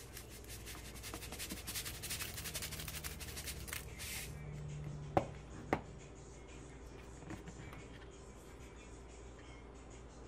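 Aluminium foil and seasoning containers being handled on a kitchen counter: a few seconds of dense crinkling and rustling, then two sharp clicks half a second apart about halfway through, followed by quieter handling.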